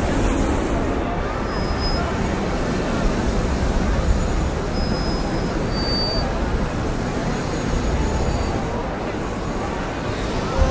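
A large crowd of spectators chattering all around, a steady mix of many voices over a low rumble.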